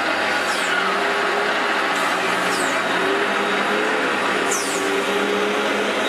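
A heavy lorry hauling a fairground load passes close by, its diesel engine running steadily. Three short high-pitched squeaks fall in pitch, about two seconds apart.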